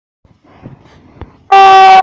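A sudden, very loud horn-like blast on one steady pitch, starting about one and a half seconds in and held, so loud it distorts.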